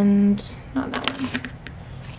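A woman's drawn-out spoken "and" trails off, then light clicks and clatter of small hard objects being handled, a few sharp ticks over about a second.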